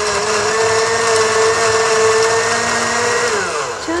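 Countertop blender running loud and steady as it blends a smoothie, its motor winding down with a falling pitch near the end.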